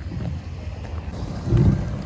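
A car rolling slowly past on a wet, gravelly road: a low rumble of engine and tyres that swells near the end.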